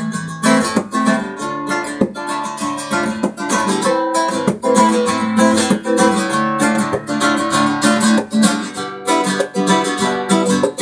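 Lester Devoe flamenco guitar, with a cedar top and cypress back and sides, played solo in flamenco style. Fast strummed chords run in a quick, steady stream of strokes, with plucked notes between them.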